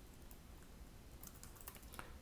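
Faint keystrokes on a computer keyboard: a run of light clicks as a line of code is typed.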